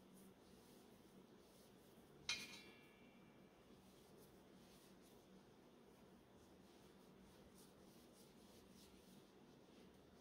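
Near silence broken by one sharp metallic clink about two seconds in that rings on briefly: a metal part knocking against the HydroVac brake booster's steel vacuum cylinder shell.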